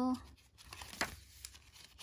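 Paper pages of a handmade junk journal rustling as they are turned by hand, with one sharp paper flick about a second in.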